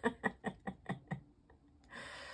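A woman laughing: a short run of chuckles, about five a second, dying away after about a second.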